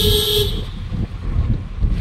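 A vehicle horn honks with one steady tone that cuts off about half a second in, over the low rumble of road and traffic noise heard from inside a moving car.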